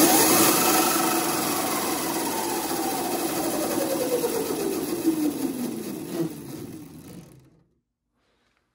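Electric go-kart's brushless DC motor (the 1800 W Kunray-kit motor, now on a 3000 W controller) driving the chain and rear axle up on blocks with no load: a steady whine with chain and drive noise. About a second in, the whine starts to fall in pitch and fade as the drive slows, dying away near the end.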